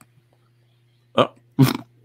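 Two short throaty vocal sounds from a person, about a second in and again just after, over a faint steady low hum.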